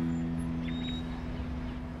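Strummed acoustic guitar chord ringing out and slowly fading, over a low steady rumble, with a short high chirp about half a second in.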